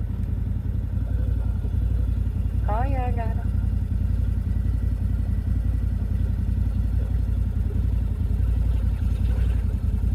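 A side-by-side UTV's engine running in a low, steady rumble. A brief voiced exclamation comes about three seconds in, and a fainter one near the end.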